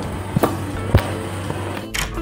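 Three sharp clicks, unevenly spaced, over a steady low hum: a key and door lock being worked.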